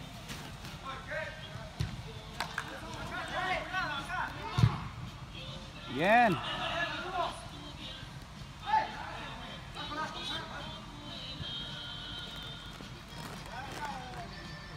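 Indoor soccer game: players shouting and calling to one another across the pitch, with a sharp kick of the ball about four and a half seconds in and a loud shout about six seconds in.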